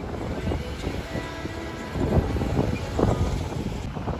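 Street traffic rumble with wind buffeting the microphone, growing louder from about halfway as a car drives past close by. Faint background music runs under it.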